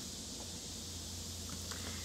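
Steady background ambience: a constant low hum under a high hiss, with a couple of faint ticks near the end.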